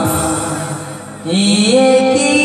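A man singing an Odia song into a microphone over backing music; the sound dips about a second in, then he comes in with a long held note that slides up in pitch.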